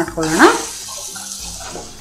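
Chopped tomatoes, onions and spices sizzling as they fry in oil in a kadai, being stirred with a wooden spatula; a steady hiss follows a short word at the start.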